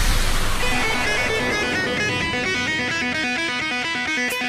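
Background music: a fast run of quickly repeating picked electric guitar notes. It comes in about a second in, as a loud electronic passage fades away.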